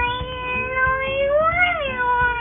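A girl's voice whining in one long, unbroken, pitched-up whimper, like a sulking child's put-on cry; it holds level, then rises and falls back about one and a half seconds in.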